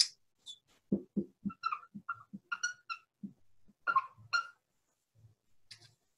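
Marker squeaking on a whiteboard as units are written out: a series of short, faint, high-pitched squeaks with soft taps between them, ending about halfway through.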